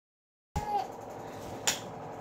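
A brief high-pitched sound as the audio begins, then a single sharp click about a second later, over quiet room tone.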